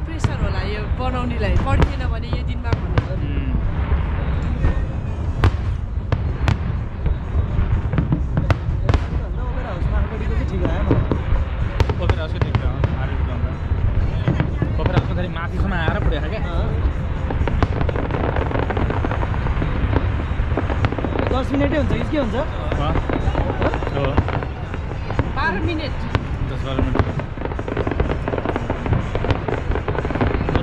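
Aerial fireworks going off: a steady run of sharp bangs and crackles over a constant low rumble, with the voices of a crowd of onlookers underneath.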